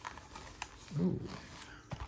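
Faint rustling and a few light clicks as the cardboard flaps of a 2023 Topps Series 1 jumbo box and the card packs inside are handled.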